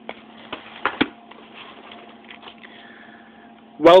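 VHS tape box being handled and turned over in the hand: a few light knocks and rubs in the first second, over a steady electrical hum.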